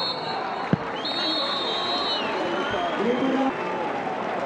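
Referee's whistle blowing for full time: a short blast that ends just after the start, then a longer blast of about a second starting a second in, over steady stadium crowd noise. A single sharp knock comes just before the second blast.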